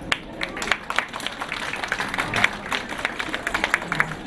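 An audience applauding: many hands clapping in an uneven, continuous patter.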